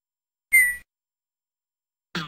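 A short whistle-like beep from Tux Paint's interface sound effects, a single brief tone that falls slightly in pitch, about half a second in.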